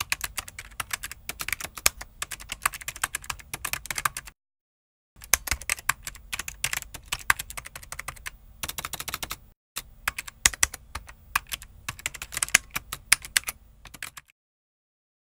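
Rapid keyboard typing clicks in three runs, broken by short pauses about four and nine and a half seconds in.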